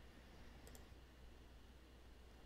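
Near silence with a low steady hum, broken by a faint quick pair of clicks from a computer mouse about two-thirds of a second in.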